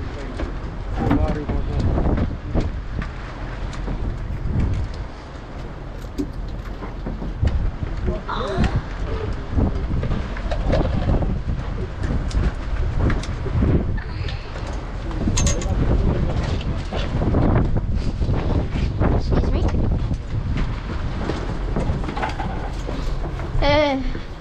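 Steady low rumble of wind and sea on the open deck of a fishing boat in rough water, with scattered knocks and muffled voices now and then.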